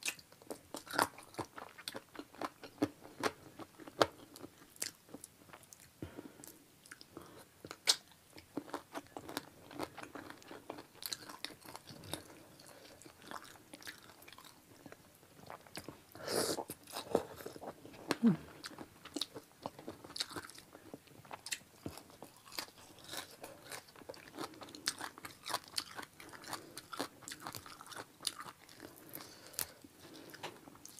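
Close-miked chewing and biting on chicken feet: irregular sharp clicks throughout, with a louder cluster of them about sixteen seconds in.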